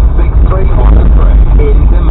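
A voice from a car radio broadcast, heard inside a moving vehicle's cab over a heavy, steady low rumble of engine and road.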